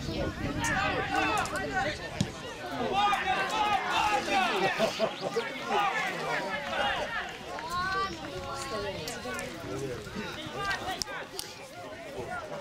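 Several voices shouting and calling out at once on an outdoor football pitch, overlapping and unclear.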